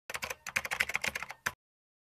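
Rapid keyboard-typing sound effect, about a dozen clicks a second for a second and a half, ending on one separate click, as the on-screen title text types itself in.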